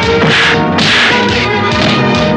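Dubbed film fight sound effects: two loud swishing punch hits about half a second apart, over a background music score with held notes.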